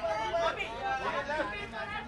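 Voices talking over one another: indistinct background chatter.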